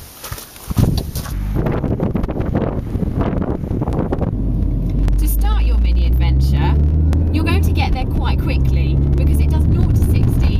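A sharp knock just under a second in, then engine and road noise from inside the cabin of a Mini Cooper S (R53) with its supercharged 1.6-litre four-cylinder. The steady rumble grows louder from about four seconds in as the car gets under way.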